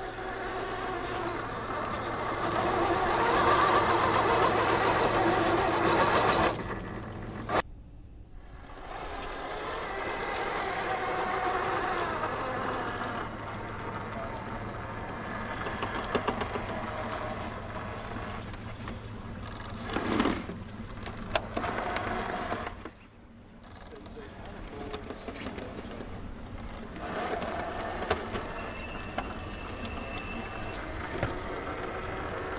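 Electric RC rock crawler, a brushless Hobbywing Fusion SE motor, whining with its drivetrain as it climbs over rock, with a few knocks and people talking in the background.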